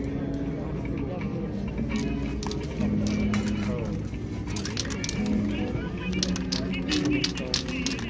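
Background music and people talking, with several short, sharp spray-can hisses in the second half as aerosol paint is sprayed onto the painting.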